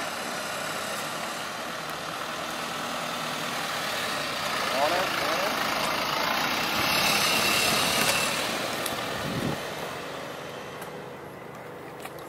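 A pickup truck driving slowly past, its engine and tyre noise steady at first, building to a peak about eight seconds in and then fading away.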